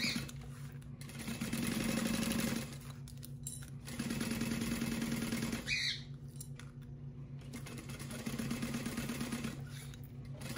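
Juki industrial sewing machine stitching a seam in short runs, starting and stopping about four times, with a steady low hum underneath and a brief high chirp about halfway through.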